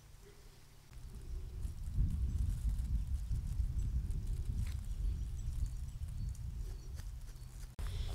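Low, uneven rumble of wind buffeting the microphone, starting about a second in and cutting off abruptly near the end.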